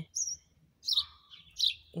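A bird chirping: four or five short, high chirps, some falling in pitch.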